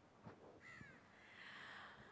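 Near silence between speakers, with faint bird calls in the background, a short one a little over half a second in and a longer one after a second.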